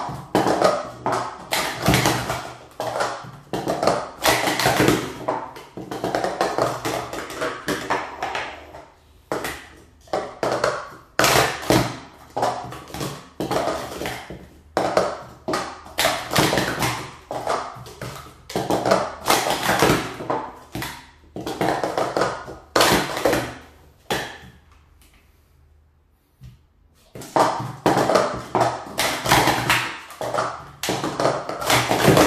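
Plastic sport-stacking cups (Speed Stacks) clattering rapidly as they are stacked up and down on a stacking mat in the cycle sequence. The clatter stops for a few seconds about three quarters of the way through, then starts again.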